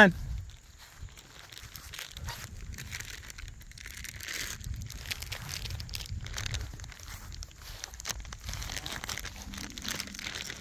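Irregular rustling and crackling with many small scattered clicks, the sound of movement and handling while feed is being put out.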